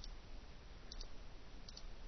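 Computer mouse button clicking three times, each click a quick pair of ticks (press and release), over a faint steady background hiss.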